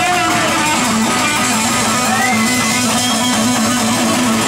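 Live rock band playing, led by an electric guitar with sustained notes that bend in pitch, over a steady, repeating backing.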